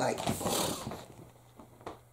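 Paperback cookbook being handled and lifted close, its pages rustling, with a single sharp click shortly before the end.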